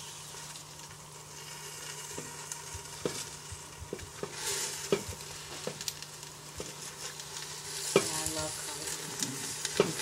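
Handfuls of chopped collard greens dropped into a hot stainless steel pot of broth and onions, the pot sizzling steadily, with scattered light knocks as the leaves and hand hit the pot.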